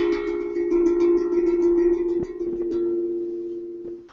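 Handpan-style steel drum played with the fingers: a new set of low ringing notes with bright overtones, a quick run of light taps over the first two seconds or so, then the notes ring on and fade before being stopped short at the end.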